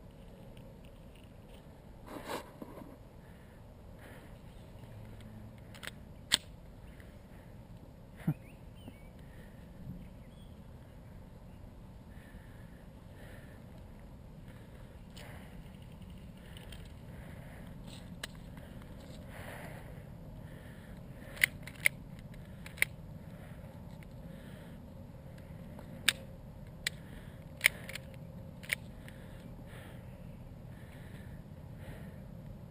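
Sharp mechanical clicks from an airsoft pistol being worked by hand, its slide and action snapping as it is checked over. There are a couple of single clicks early on, then a quicker run of about seven in the last ten seconds, over a faint steady background.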